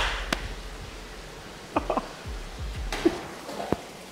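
Water splashing at the surface of a saltwater pond as predatory fish strike at live mullet, heard as a few sharp, short splashes over a faint low hum.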